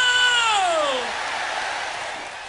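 A rock singer's long, high held note that slides steeply down in pitch about half a second in, followed by crowd noise.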